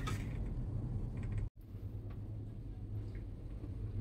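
Low, steady rumble inside a Maokong Gondola cabin as it rides the cable, with a few faint ticks. It cuts out abruptly about one and a half seconds in, then resumes.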